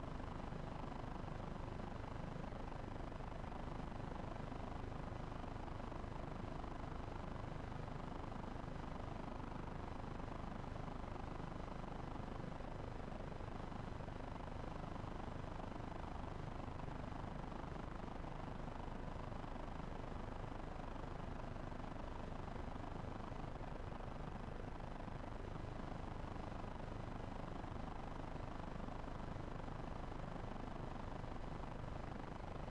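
A steady, even low rumble of background noise with no distinct events.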